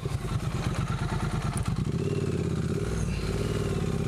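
Triumph Street Twin's 900 cc parallel-twin engine running at low revs while the bike is ridden slowly over grass and a dirt path, its firing pulses steady throughout.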